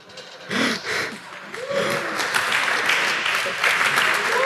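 Audience applauding, starting about half a second in and growing fuller and steadier after about two seconds, with a few voices in the crowd.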